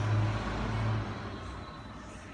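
A truck engine running as it passes by: a low steady hum that fades away about halfway through.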